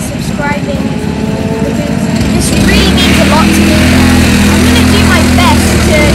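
A voice talking, with an engine running at a steady low speed that comes in about two and a half seconds in and holds, becoming the loudest sound.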